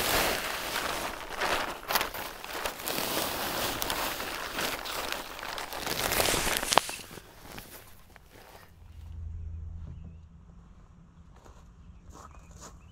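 Potting soil pouring from a plastic bag into a concrete urn: a steady rushing hiss with the bag crinkling and crackling. After about seven seconds the pouring stops and a faint low hum is left.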